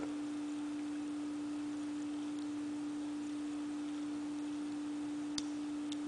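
Small geared ZoneX zone-damper motor running under power: a steady, even hum at a single pitch, with one faint click about five seconds in. The top gear's teeth are chewed, so the motor keeps spinning instead of stopping at its end point.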